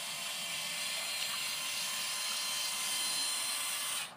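Actuator arm of an automatic chicken coop door opener running as it opens the door: a steady motor whir with a faint whine that stops abruptly after about four seconds.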